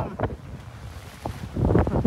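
Wind buffeting the microphone over the rush of choppy water along a sailboat's hull under sail. The noise is quieter in the middle and surges loudly near the end.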